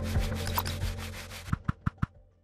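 Produced sound-effect track of a video graphic: a fast, even scratching texture of about nine strokes a second over a low music bed, ending in three quick sharp hits as the logo end card comes up, then fading.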